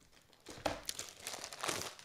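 Plastic CGC comic-book slabs being handled and slid off a stack: a run of crinkling, scraping rustles and light clicks that starts about half a second in.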